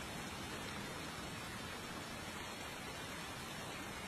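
Faint, steady hiss of background ambience, even and unchanging, with no distinct events in it.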